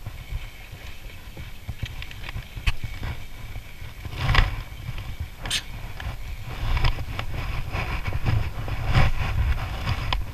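Wind rumbling on the microphone, with scattered clicks, knocks and rustles from hands working a spinning reel and rod.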